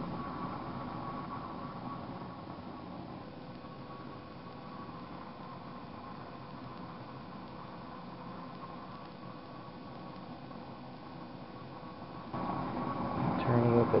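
MAPP gas blowtorch flame burning with a steady hiss. The hiss gets louder about twelve seconds in.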